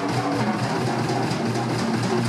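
Live rock instrumental: a drum kit played hard with cymbals ringing, over sustained bass and guitar notes.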